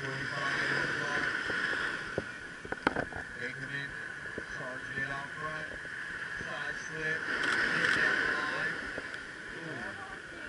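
Small ocean waves washing up on a sandy beach, a steady rush that swells about seven seconds in, with a sharp click about three seconds in. A voice calls out skimboard tricks.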